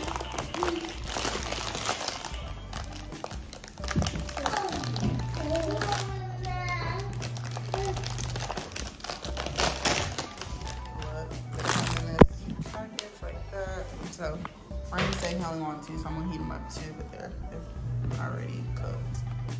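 Background music and voices over the crinkling and crackling of a clear plastic clamshell food pack being pried open, with one sharp snap about two-thirds of the way through.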